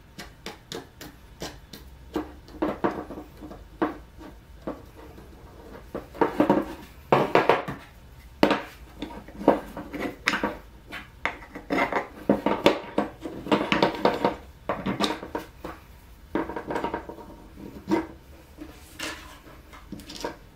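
Homemade wooden frame clamps being handled and set down on a workbench: irregular knocks and clatter of wood on wood and on the bench top, with the rattle of the bolted hinged arms.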